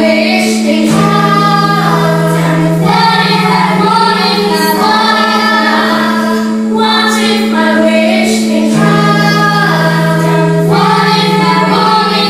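Children's choir singing a song with instrumental accompaniment, a held low note underneath that changes pitch every couple of seconds.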